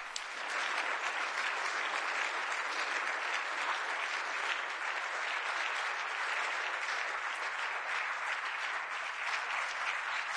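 Sustained applause from a large seated audience of many people clapping, dense and steady throughout.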